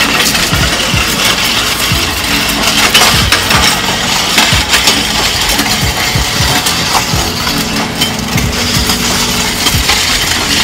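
A weighted Prowler push sled being driven across rough asphalt, its metal skids scraping and grinding in a steady rough rasp full of small knocks and clinks.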